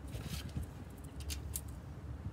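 Steel tape measure being pulled out and set against the door's lower edge: a short rasp near the start, then a few sharp light clicks a little past the middle, over a low rumble of handling noise.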